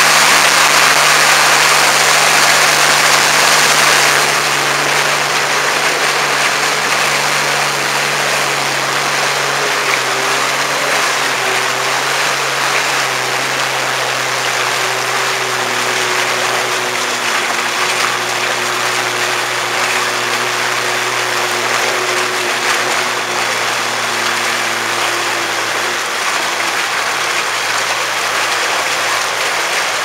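Sea-Doo GTX personal watercraft running at speed: a steady engine and jet drone under the rushing hiss of its wake spray. The hiss is loudest for the first four seconds, then eases, and the engine note drops a little about ten seconds in.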